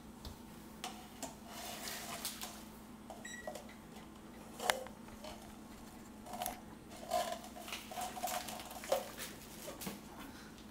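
Small plastic cups clicking and knocking together as a toddler handles and nests them, with one louder knock about halfway through, over a steady low hum. A short electronic beep sounds about three seconds in.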